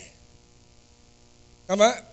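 A short pause in a man's speech filled only by a faint, steady electrical mains hum. His voice trails off at the start and comes back near the end.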